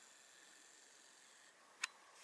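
Near silence: faint room tone with a steady high hiss, and one short sharp click near the end.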